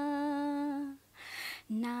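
A young woman's solo voice singing unaccompanied. She holds one long steady note for about a second, takes a quick audible breath, then starts the next phrase on a lower note near the end.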